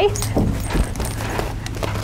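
A horse moving about on the ground, with a few dull hoof thuds about half a second in, then lighter shuffling.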